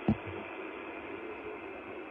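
Shortwave radio receiver hiss on a single-sideband amateur band, an open channel with no station transmitting, cut off above the receiver's audio passband. One short, sharp thump comes right at the start.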